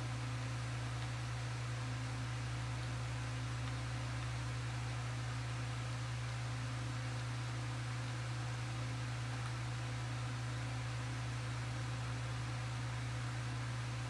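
Steady low hum under an even hiss, unchanging throughout: background room noise.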